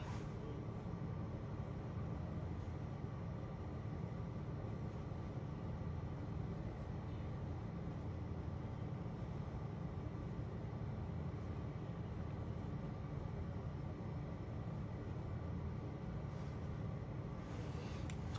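Steady low background hum of room tone, unchanging and without any distinct sounds.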